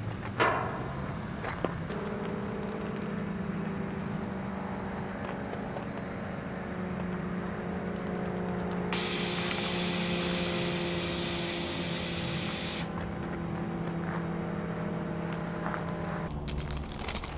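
Aerosol spray paint can spraying in one continuous hiss of about four seconds, starting a little past the middle. A steady low hum runs underneath throughout, and there is a sharp click near the start.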